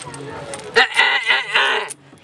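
A person's voice in a quick run of short, high, repeated syllables, starting just under a second in and stopping shortly before the end.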